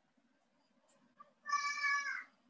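A single short, high-pitched cry like an animal's call, about three-quarters of a second long, dropping in pitch at its end. Faint ticks come just before it.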